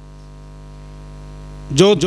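Steady electrical mains hum from the microphone and amplification chain, a set of fixed low tones; a man's amplified voice cuts in near the end.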